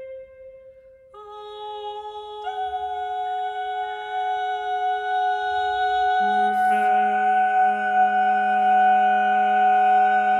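Unaccompanied vocal quartet (soprano, alto, tenor, bass) singing long held notes in a contemporary piece. After a soft opening, voices come in one by one, about a second in, again about two and a half seconds in, and a low voice about six seconds in, building into a sustained chord that grows steadily louder.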